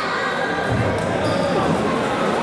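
Voices echoing in a large sports hall, with a dull low thump about three-quarters of a second in.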